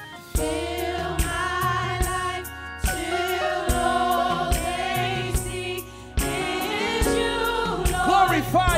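Gospel worship music: a vocal group singing together in harmony over a band with a steady beat. The music dips briefly about six seconds in, then comes back in full.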